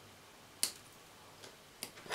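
Side cutters snipping the wire legs of a small transistor: two sharp clicks about a second and a quarter apart, with a faint tick between them.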